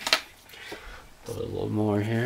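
A man's voice holding a drawn-out wordless hum in the second half, after a brief sharp noise near the start.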